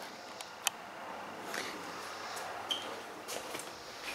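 Low, steady background hiss of a quiet garage with a few faint clicks and ticks, the sharpest right at the start and another about two-thirds of a second in.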